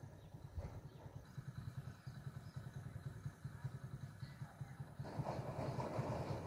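A motorcycle engine running at a distance, a steady fast low pulsing. A louder rushing noise rises about five seconds in.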